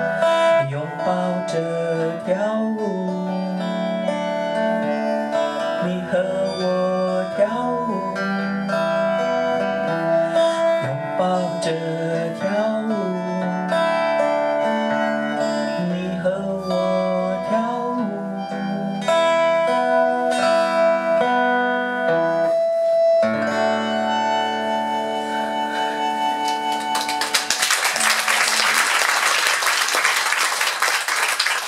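A woman singing to her own strummed acoustic guitar, a song in five-beat time. The song closes about 23 seconds in on long held tones, and applause breaks out near the end.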